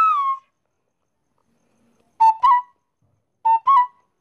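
A flute plays: a held note slides down and stops just after the start, then short two-note phrases, a lower note then a slightly higher one, come twice with silence between.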